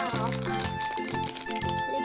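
A foil-lined plastic candy wrapper crinkling as it is pulled open by hand, over background music with a steady beat.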